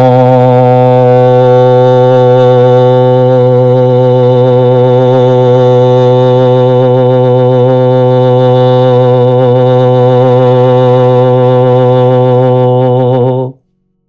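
A man's voice holding one low sung note on an open "ah" vowel, the healing sound "pa" toned as a long steady drone with a slight wobble in pitch. It stops abruptly near the end.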